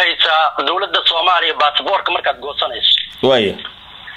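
Speech only: a man talking, his voice thin and cut off in the highs like a telephone line.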